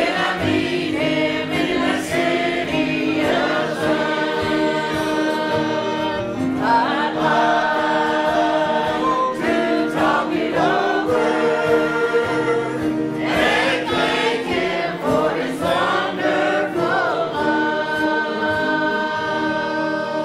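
A group of voices singing a hymn together in long held notes.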